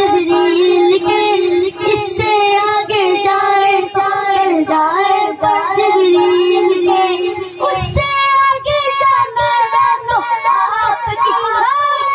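A boy singing a naat solo into a microphone, in long held, ornamented notes, moving up to a higher pitch about eight seconds in.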